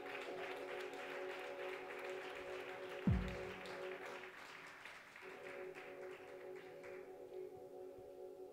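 A steady amplified drone, a held chord of several tones from the band's guitar effects, hangs under audience applause that thins out and dies away over the first seven seconds. A single low thump sounds about three seconds in.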